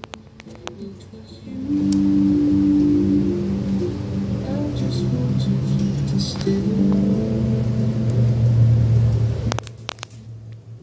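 Music played by the Raspberry Pi Zero cigar-box wifi stereo through its speaker: long held low notes that change every second or so, louder from about two seconds in. A few handling clicks come near the start and again just before the end.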